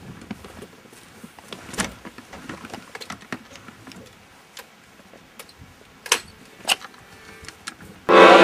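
Scattered light clicks and knocks over a faint hiss, with a few sharper ones about two seconds in and twice near six to seven seconds: handling and movement noise.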